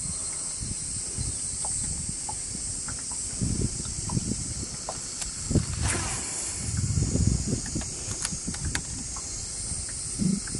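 A steady, high insect chorus, with low rumbles of wind and handling on the body-worn microphone; about six seconds in, the swish of a casting rod.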